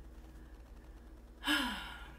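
A woman's breathy sigh about one and a half seconds in, sliding down in pitch and fading over about half a second, done as a vocal warm-up.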